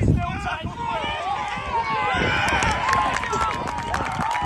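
Several men's voices calling and shouting over one another during open play in a rugby league match, with one voice holding a long call near the end.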